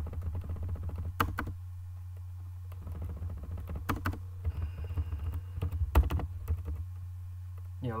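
Typing on a computer keyboard: runs of quick key presses in bursts, with a few louder single strikes, over a steady low hum.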